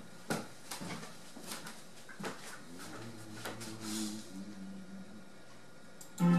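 Several light, scattered knocks and clicks in a small room, with a faint held low tone about halfway through.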